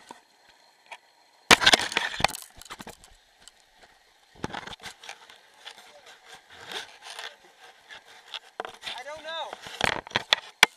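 Close knocks and scraping against an action camera's housing, loudest in a cluster of sharp hits about a second and a half in, then more rubbing and taps. Near the end a person gives a short cry that rises and falls in pitch.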